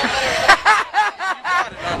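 A person laughing in a run of short, even 'ha' pulses, about four a second, starting about half a second in.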